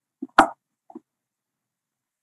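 A single short, sharp pop about half a second in, with two faint, smaller ticks around it, against otherwise dead silence.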